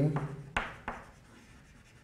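Chalk writing on a blackboard: a few short scratches and taps in the first second, then much quieter strokes.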